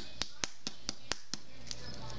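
A run of sharp, evenly spaced clicks or taps, about four a second, stopping near the end.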